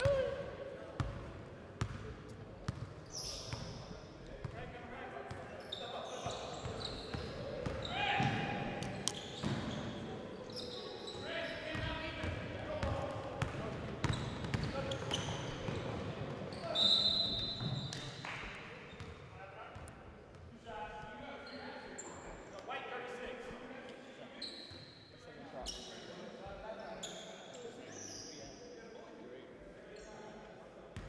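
A basketball bouncing on a hardwood gym floor, with scattered thumps of play and players' voices in a large gym.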